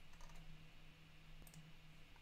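Near silence: faint room tone with a steady low hum and a few faint clicks.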